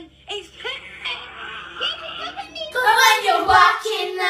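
A young girl's voice singing and calling out over a low steady hum. About three quarters of the way in, the sound cuts abruptly to louder singing by young girls.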